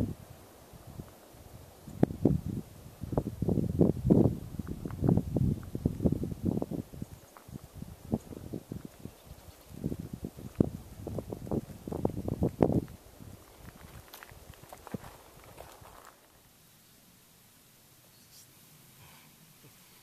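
Footsteps on a dirt trail, walking downhill: an irregular run of steps about two a second that goes on for some ten seconds, then fades to near silence.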